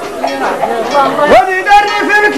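Men's voices talking and calling out, then one voice slides up into a held sung note about one and a half seconds in, as the singing starts again.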